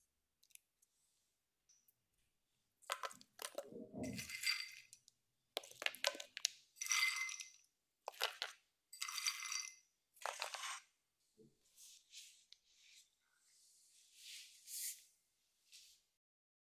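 Chopped nuts (hazelnuts and almonds) dropped by hand in handfuls onto cake batter in a metal cake pan. About six clinking, rattling clatters come over several seconds, some pieces ringing off the pan. Softer, fainter scattering follows near the end.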